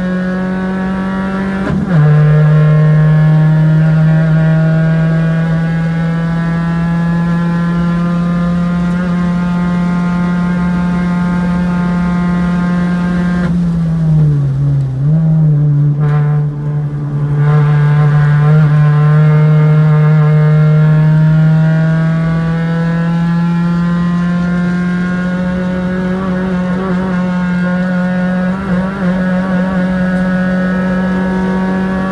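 Race car engine heard through an onboard camera, held at high revs on a sprint lap. About two seconds in there is a click and the note drops to a lower pitch and gets louder, like an upshift, then the revs creep up. Around halfway the note dips and wavers as the car slows for a corner, then climbs again.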